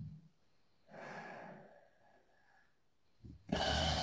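A person's breathy sighs or exhalations: one about a second in, and a louder one near the end, with a short low bump at the very start.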